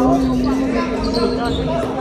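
Basketball bouncing on a hardwood gym floor during play, with players calling out on the court.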